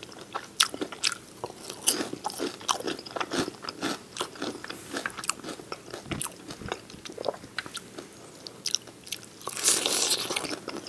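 Crispy fried chicken wings in lemon pepper butter sauce being bitten and chewed. The breading breaks in many sharp, irregular crunches between stretches of chewing, and a louder cluster of crunches comes near the end.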